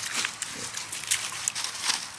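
German Shepherd puppy digging and rooting in wet mud: paws scraping and nose pushing through soil in short, uneven strokes, with a few brief animal sounds from the dog.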